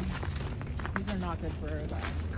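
Footsteps crunching in packed snow as several people walk along a sidewalk, over a steady low rumble. A voice talks quietly in the second half.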